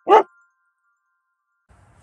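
A single short, loud dog bark as part of a logo sound effect, just after the start, followed by silence.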